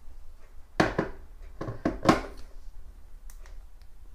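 A few short knocks and clunks, the loudest about a second in and about two seconds in: a stainless gooseneck kettle being set back down on its electric base.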